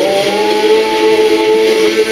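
A man's singing voice holding one long, steady note over the song's music, just after a downward glide.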